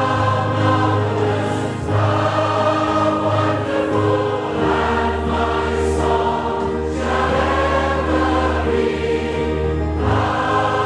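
Many voices singing a hymn together, held notes moving from line to line every two to three seconds, over long held low notes.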